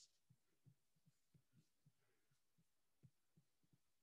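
Near silence, with a few very faint low ticks.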